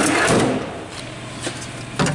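Steel tool-chest drawer sliding shut on its slides: a rush of sliding metal, loudest in the first half second, then quieter handling with a couple of light clicks.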